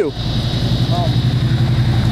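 Steady low rumble on a body-worn camera microphone, with a short voice fragment about a second in.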